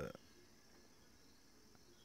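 Near silence with a faint, steady, high chirring of insects in the background. The tail of a spoken word is heard at the very start.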